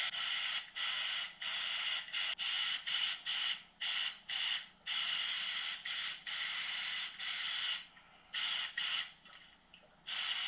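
Compressed-air gravity-feed paint spray gun hissing in a run of short bursts, each under a second, as the trigger is pulled and released between passes. The bursts stop about nine seconds in.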